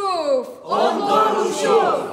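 A group of young actors' voices declaiming a line in chorus, loud and in unison: two phrases, each falling in pitch at its end, with a short break between them about half a second in.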